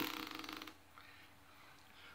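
Acoustic guitar's last strum dying away as the hand damps the strings, fading out within the first second and leaving near silence.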